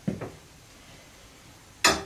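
A small iron cooking pot and its hanging hardware clanking against the iron crane in a hearth as it is handled: a soft knock just at the start, then one sharp clank near the end.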